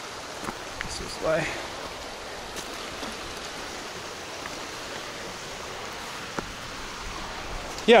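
Steady rushing of a nearby mountain river, with a few faint clicks from steps on stones.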